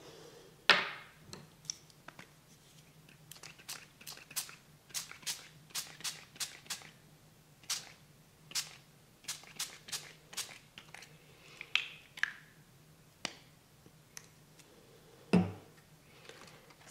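Fingertips pressing and tapping a sheet of paper down onto wet glossy photo paper in a cardboard tray: a run of light, irregular clicks and crackles, with a louder knock about a second in and another near the end.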